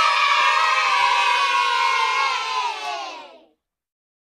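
A crowd of many voices cheering and yelling together, loud and held, sagging slowly in pitch and fading out about three and a half seconds in.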